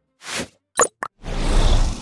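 Logo-sting sound effects: a short swish, a quick pop and a click, then a louder rushing whoosh with a deep low rumble that starts a little past a second in and begins to fade near the end.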